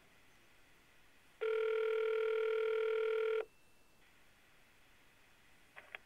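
Telephone ringback tone heard over a desk speakerphone: one steady two-second ring, the signal that the called line is ringing at the other end and has not yet been answered.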